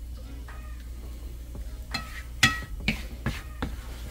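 Wooden spoon stirring scrambled eggs in a nonstick frying pan: quiet at first, then a few short scrapes and knocks of the spoon against the pan in the second half.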